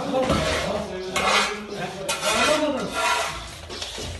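Household rubbish being scraped and shoved across the floor with a long-handled tool, in several short rasping strokes about a second apart, with clatter from items in the debris.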